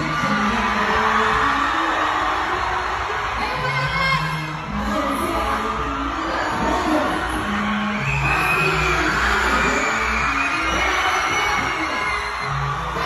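Loud dancehall music with a repeating bass line, and a woman singing and chanting over it into a microphone.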